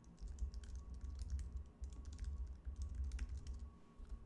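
Rapid, irregular keystrokes on a computer keyboard, typed in short runs, over a faint low rumble.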